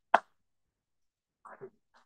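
A single sharp hand clap just after the start, then a few softer short sounds about a second and a half in.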